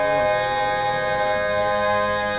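Male barbershop quartet singing a cappella, holding a sustained four-part chord, the lower voices moving to new notes partway through.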